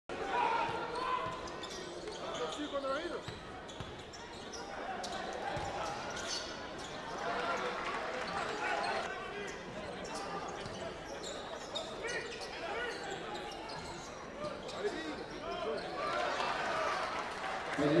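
Live arena sound of a basketball game: the ball bouncing on the hardwood court amid the voices of players and crowd in a large hall.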